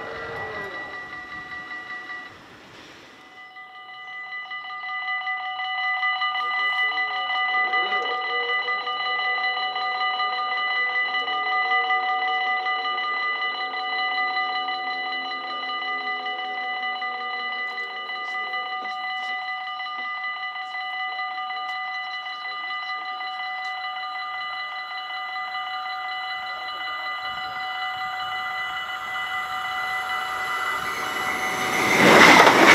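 Dutch level-crossing warning bells ringing in fast, steady strokes at a fixed pitch. They break off briefly about two and a half seconds in, then come back and build up again. A lower humming tone with a wavering pitch sounds underneath for a while in the middle, and near the end the noise of an approaching ICE 3 high-speed train begins to rise under the bells.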